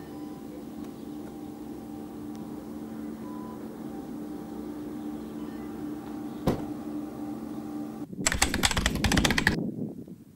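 A steady low mechanical hum, a single sharp click partway through, then a loud rapid clattering for about a second and a half near the end, after which the hum stops.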